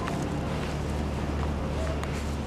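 Steady low hum of a tour boat's engines, heard inside the passenger cabin.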